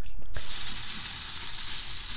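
A steady, even hiss that starts abruptly about a third of a second in.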